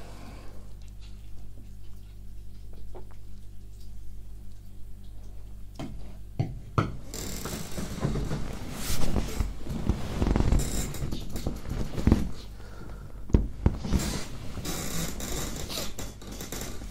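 A steady low hum, then from about six seconds in a run of close-miked clicks, creaks, rustles and knocks from a creaky chair and a person shifting in it.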